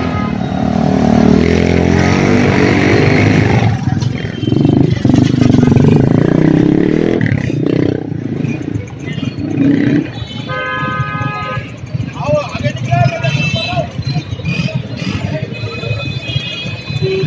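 Motorcycle engines running close by in a busy street, over the chatter of many people talking at once. The engine is strongest in the first few seconds.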